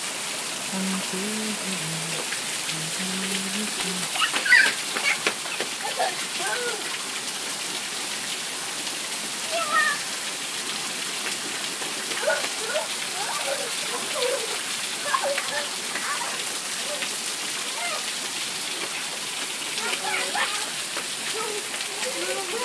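Heavy rain falling steadily on pavement and gravel, with short voices and higher-pitched calls breaking in now and then.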